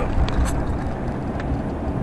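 Steady low road and engine rumble inside the cab of a moving vehicle, with a couple of faint ticks.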